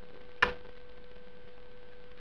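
A single sharp click about half a second in, over a faint steady hum.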